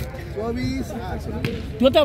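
Voices talking, with a couple of sharp thuds of a volleyball being struck about one and a half seconds in; a man starts speaking loudly near the end.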